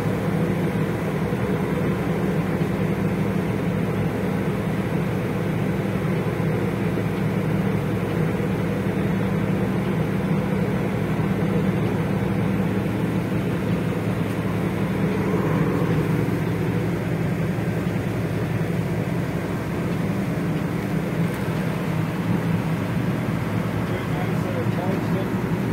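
Boat engine running steadily, a low, even drone heard from on board.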